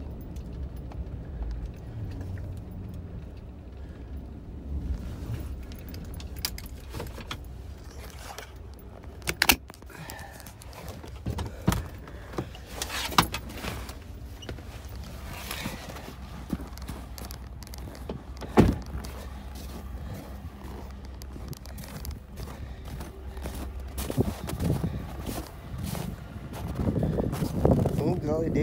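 Pickup truck's engine humming low, heard from inside the cab, with a handful of sharp clicks and knocks from handling the phone and the truck door as the driver climbs out.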